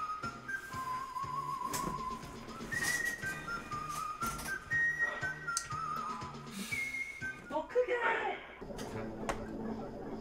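Background music carrying a whistled tune of short, stepping notes over a repeating low beat. A man's voice cuts in briefly about three-quarters of the way through.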